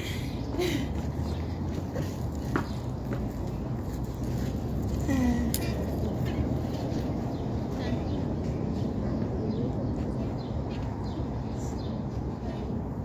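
Steady background hum with faint, distant voices and a few light clicks.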